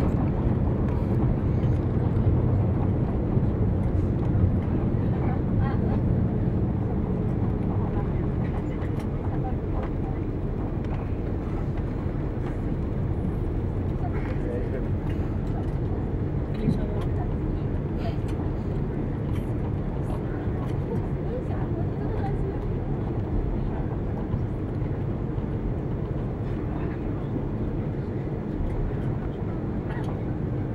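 Cabin noise of an Airbus A330-300 on its landing rollout with spoilers raised: a steady low roar of engines, airflow and wheels on the runway that slowly grows quieter as the aircraft slows, with small clicks and rattles.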